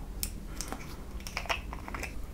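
Yellow plastic cap of a small bear-shaped squeeze bottle being twisted off by hand: a run of small sharp plastic clicks, a few at first, then coming quickly together in the second half.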